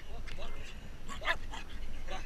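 A Jack Russell terrier close to the microphone gives short yips and whines, the sharpest a little past halfway, with people's voices in the background.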